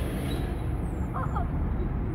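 Tanker lorry driving past on the street, its engine giving a steady low rumble.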